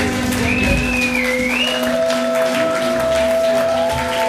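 A live rock band's song ending: the drums stop under a second in and held guitar notes ring on, with a wavering high tone in the first two seconds. Crowd applause underneath.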